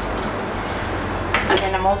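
Light clinks of small containers being handled, over a steady low hum; a woman starts speaking near the end.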